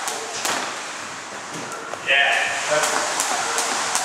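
Skipping rope slapping the gym floor in a steady run of light clicks, with a voice calling out over it in the second half.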